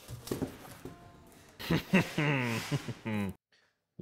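Plastic wrapping rustling and crinkling as it is pulled off a guitar, then a man's wordless vocal sounds with sliding pitch, which cut off abruptly near the end.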